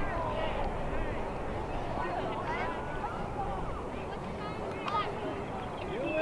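Indistinct, distant voices of players and spectators calling across an open playing field, faint and scattered over a low steady background noise.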